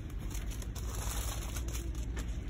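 Store background noise: a steady low hum with a faint rustle over it.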